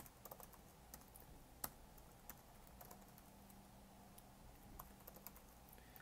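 Faint, irregular keystrokes on a computer keyboard: scattered clicks with short pauses between them as a line of code is typed.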